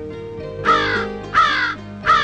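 Two short, harsh crow caws about half a second apart, over soft background music.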